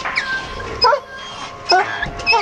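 Puppies whining and yipping in short, high-pitched calls that bend in pitch, the loudest about a second in and again near the end, over steady background music.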